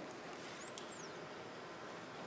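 Faint, steady background hiss of room noise, with no distinct event.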